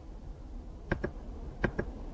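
Two pairs of light computer clicks, one pair about a second in and another near the end.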